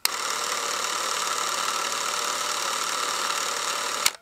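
Film projector sound effect: a steady mechanical whir and rattle that starts suddenly with a click and cuts off just as abruptly about four seconds later.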